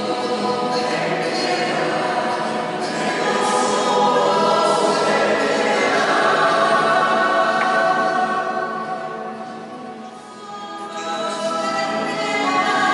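Church choir singing a sung part of the Mass, with sustained phrases, a brief lull about ten seconds in, then the singing rises again.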